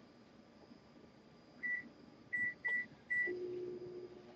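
Four short, high electronic beeps, one about a second and a half in and three more in quick succession, followed near the end by a steady low hum.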